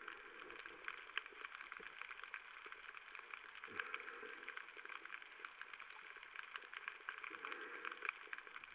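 Faint underwater crackling, a dense steady patter of tiny clicks typical of snapping shrimp on a reef at night, with a short soft falling swish about four seconds in.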